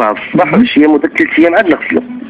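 Speech only: voices talking on a radio broadcast.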